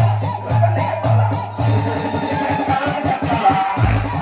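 Desi DJ dance mix played loud over a sound system, with a pounding bass beat. About one and a half seconds in, the beat gives way to a run of quick drum hits that builds up, and the deep bass drops back in just before the end.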